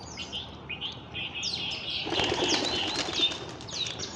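Small birds chirping over and over in the background with short, high calls, and a brief rush of noise about halfway through.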